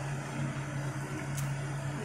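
A steady low mechanical hum, as from a running motor or fan, with a single faint click about one and a half seconds in.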